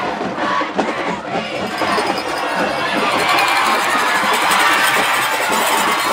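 Stadium crowd cheering and shouting, with music playing through the noise.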